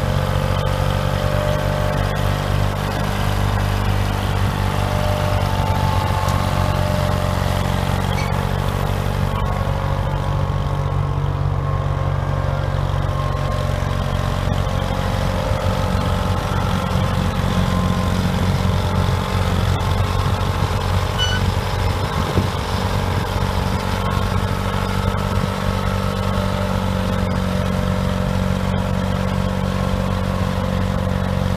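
Allis-Chalmers crawler tractor's engine running steadily as the loader crawler drives and turns on its tracks.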